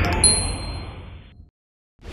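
Logo-sting sound effect: a bright ding chimes about a quarter second in and rings briefly over a rushing whoosh that fades away. A short, sharp swoosh sounds near the end.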